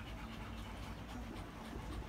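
A dog panting softly.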